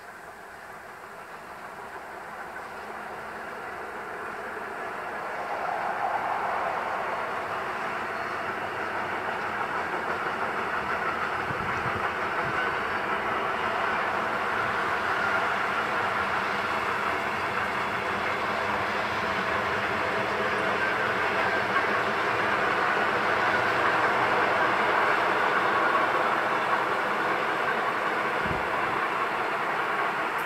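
A freight train hauled by a DB class 151 electric locomotive running past, its wheel-and-rail noise growing louder over the first several seconds and then continuing steadily.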